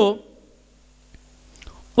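A man's amplified speaking voice ends a phrase, and a short pause follows. Through the pause a faint steady hum and one small click can be heard, and his voice starts again at the very end.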